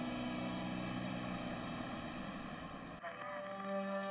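Sustained low tones of background music over a steady rush like passing traffic. About three seconds in, the rush cuts off and a held chord of low tones carries on, swelling toward the end.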